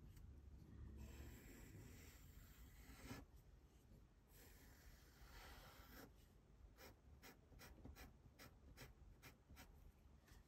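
Faint scratching of a graphite pencil on tracing paper as a drawing is retraced, with longer strokes at first and then quick short strokes, about three a second, over the last few seconds.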